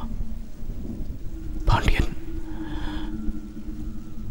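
Rain and a thunderclap: a steady low rumble with a sharp loud crack about two seconds in, followed by a low held drone.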